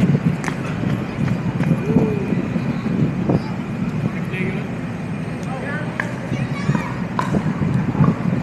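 Pickleball paddles and a plastic pickleball giving several sharp knocks at uneven intervals, over a steady low background noise and distant voices.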